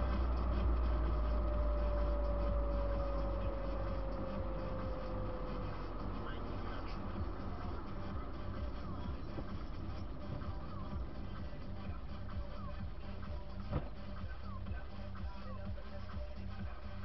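Dash-camera sound from inside a moving car: a steady low rumble of road and engine, with a car radio playing music and voices under it. A faint tone slides slowly down in pitch over the first six seconds, and there is a single short knock near the end.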